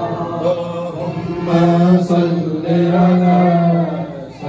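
Several men chanting a devotional Islamic refrain together, holding long notes.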